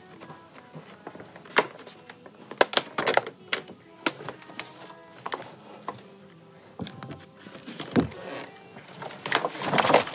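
A thin plastic food container being handled and kitchen scraps tipped from it into a plastic trash-can compost bin: irregular clicks and knocks, loudest near the end, over soft background music.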